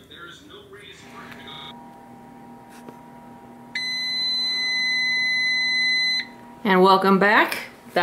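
An electronic kitchen timer sounds one long, steady beep of about two and a half seconds, signalling that the 25-minute bake time is up and the cake should be done. A low steady hum runs underneath from about a second in.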